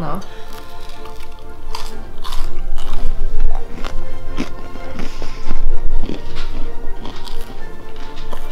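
A man biting and chewing the crusty heel of a freshly baked homemade loaf, with scattered crunches, over background music.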